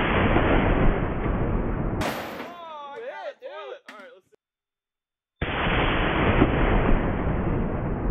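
.50-caliber belt-fed machine gun firing full-auto bursts, heard as a dense continuous booming rather than separate shots. The first burst stops about two seconds in and is followed by a wavering voice; the second starts sharply about five and a half seconds in and slowly fades.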